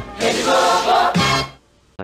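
Music from a vintage Rede Globo TV station ident: a short jingle that cuts off about a second and a half in.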